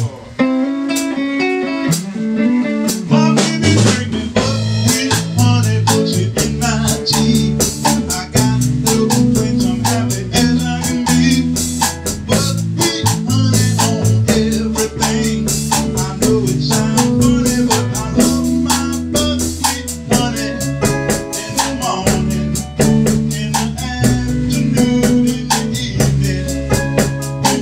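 Live band playing an R&B groove on electric guitar, bass guitar, drum kit and Casio keyboard. The bass fills in about three seconds in, and the full band carries on with steady drum hits.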